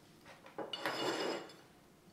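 Ceramic dinner plate slid across a wooden tabletop: a scrape of about a second, starting about half a second in, with a light ring from the plate.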